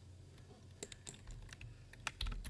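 A few faint, scattered keystrokes on a computer keyboard, single separate clicks rather than a steady run of typing.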